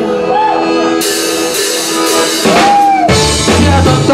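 Live band playing an instrumental passage led by a bayan (button accordion): held accordion chords, a cymbal crash about a second in, and drums and bass coming in strongly about three seconds in.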